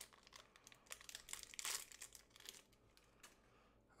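Faint crinkling of a small clear plastic bag being torn open by hand to take out a ball bearing: a run of quick crackles that thins out near the end.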